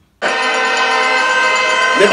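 A loud, steady horn-like blare of several held tones sounding together, cutting in suddenly just after the start.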